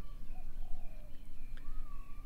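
Faint thin bird calls, a few short whistles and one longer note near the end, over a steady low background rumble.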